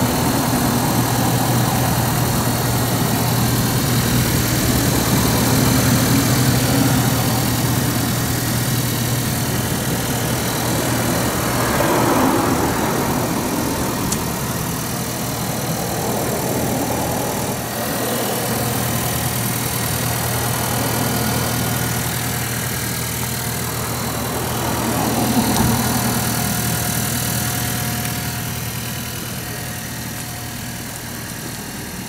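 Honda Jade Hybrid's 1.5-litre four-cylinder engine idling with a steady low hum, swelling briefly twice.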